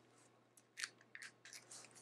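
A few faint small clicks as the plastic cap is twisted off a glass roll-on perfume oil bottle.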